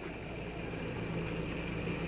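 A steady low mechanical hum over an even background noise, with no distinct events.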